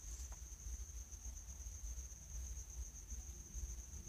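Quiet background: a steady high-pitched whine over a low hum, with one faint click about a third of a second in.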